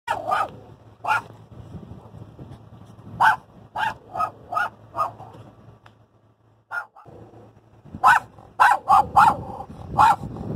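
Bandit the dog barking excitedly at a wild donkey: short, sharp barks in bouts, a couple at first, a run of about five at roughly two a second, then a quicker flurry near the end. A faint low steady hum sits underneath.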